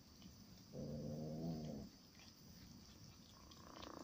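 A domestic cat gives one low, steady growl lasting about a second while it eats a mouse, a warning to keep another cat away from its prey.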